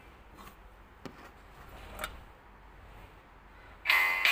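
A break in the background music: faint room tone with two small sharp clicks, one about a second in and another about two seconds in.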